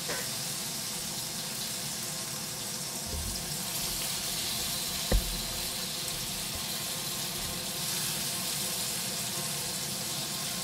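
Flour-dusted zucchini blossoms sizzling steadily in hot oil in a frying pan, with a single sharp knock about five seconds in.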